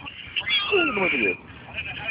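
A person's voice sliding down in pitch for about a second, then trailing off into quieter background sound.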